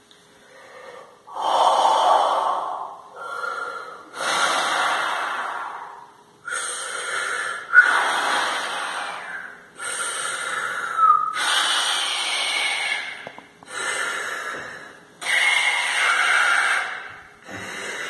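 A man blowing hard through his mouth as if inflating an imaginary balloon: about ten long, rushing blows, each lasting a second or two, with brief pauses to breathe in between.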